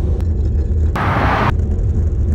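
Wind buffeting the camera microphone: a loud, steady low rumble, with a half-second burst of hiss about a second in.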